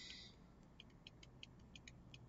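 Near silence, with a string of faint, light ticks in the second half: a stylus tapping on a tablet screen while writing.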